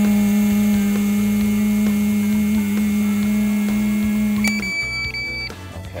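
A woman blows steadily into an ignition interlock breath-test handset for about five seconds, humming one steady low note with the breath rushing through the mouthpiece. Near the end a high electronic beep, broken once, sounds from the device as the breath sample is taken and the test passes.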